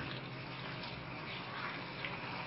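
Thick spinach-and-chicken curry steadily bubbling and sizzling in a pot over a high gas flame while a spatula stirs it, as its liquid cooks down.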